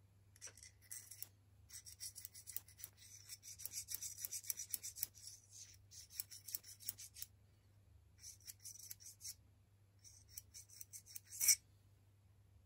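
Steel parts of a Sturmey-Archer AG hub's axle assembly rubbing and clicking as a small part is slid and turned along the axle past the sun gear. The sound comes in three spells of light scraping and ticking, with a sharper click near the end.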